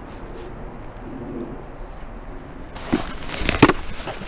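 Mostly quiet at first; then, from about three seconds in, a run of loud, irregular cracking and crunching knocks as an upturned black bucket gives way under a foot stepping onto it, the foot going right through into the creek water.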